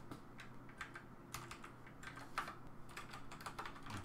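Computer keyboard being typed on, an irregular run of quiet keystroke clicks over a faint steady low hum.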